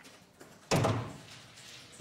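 A door shutting with a single sharp thud about three quarters of a second in, which dies away over about half a second.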